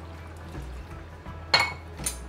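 Water poured from a jug into a pan of simmering pasta and beans, then a single sharp clink of kitchenware about one and a half seconds in, over background music.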